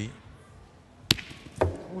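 Steel pétanque boules: one sharp metallic clack with a brief ring about a second in, then a duller knock half a second later.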